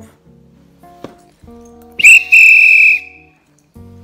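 A hand whistle blown once, a shrill steady blast about a second long, like a train conductor's departure signal, over a soft musical accompaniment.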